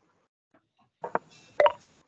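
Two short, sharp digital move clicks from an online chess board, about half a second apart, as a piece is played.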